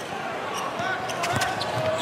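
A basketball being dribbled on a hardwood court, with a few scattered bounces over steady arena crowd noise.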